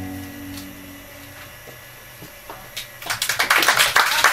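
A small jazz band's held final chord fades out over about the first second. After a short near-quiet pause with a few faint clicks, an audience starts applauding about three seconds in, loud and dense.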